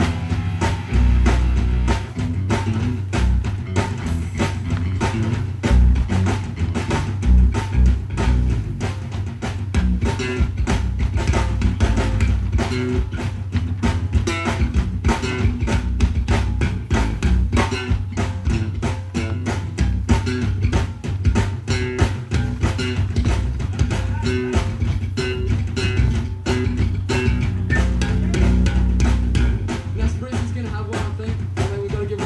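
Live rock band playing an instrumental passage: two electric guitars and an electric bass over a drum kit keeping a steady, fast beat.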